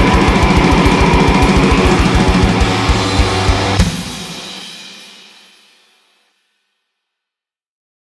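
Black metal band playing distorted guitars over rapid kick-drum strokes. The song ends on a final hit a little under four seconds in, which rings out and fades away over about two seconds.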